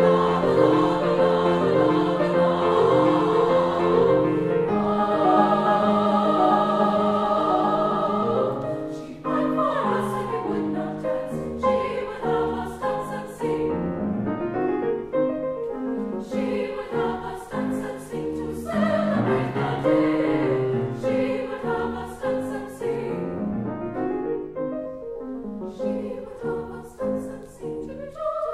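Women's choir singing a classical choral piece with piano accompaniment. Long held chords for the first nine seconds or so, then shorter, moving notes.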